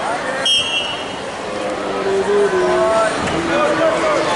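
A referee's whistle blows once, short and shrill, about half a second in, signalling the start of the wrestling period. Shouting voices from the crowd and coaches follow, with long held calls.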